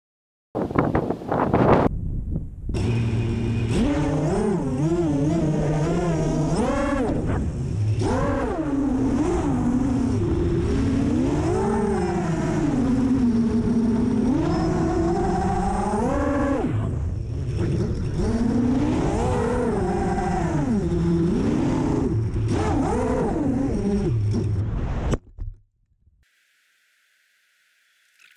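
Five-inch FPV racing quadcopter's brushless motors and propellers whining, recorded on the quad itself, the pitch rising and falling as the throttle changes. The sound cuts off suddenly near the end.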